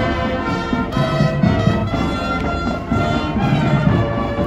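Marching band playing: brass instruments holding pitched notes over a steady drum beat.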